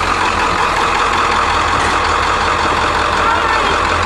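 International 3800 school bus's T444E turbo-diesel V8 idling steadily.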